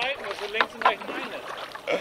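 People talking indistinctly.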